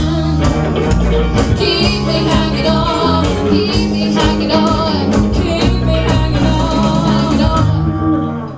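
Live rock band in a small room: two female vocalists singing over electric guitar, bass guitar and drums, with a steady bass line and regular drum hits.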